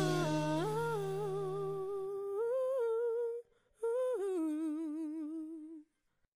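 Wordless closing vocal of a gospel song: a single voice humming a slow melody with vibrato, stepping up and down between held notes, while the last low backing note fades out in the first two seconds. The voice breaks off briefly in the middle and stops a little before the end.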